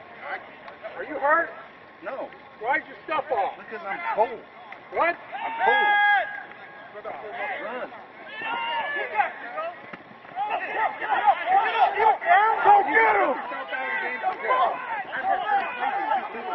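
Several men shouting and yelling over one another without clear words, including one long held shout about six seconds in; the voices grow louder and more continuous from about ten seconds in as the play develops.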